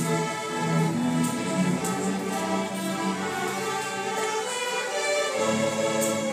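A middle school string orchestra plays an overture: sustained violin lines over cellos and double basses, with the low strings coming in strongly near the end.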